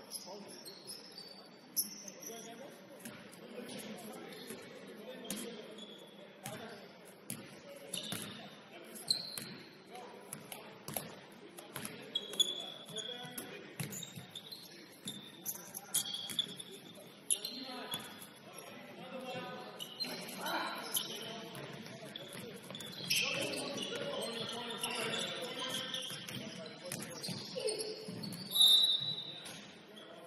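Pickup basketball game in a gymnasium: the ball bouncing on the hardwood floor in repeated sharp knocks, short high squeaks of shoes on the court, and players' indistinct shouts echoing around the hall, busier and louder in the last third with a sharp loud spike near the end.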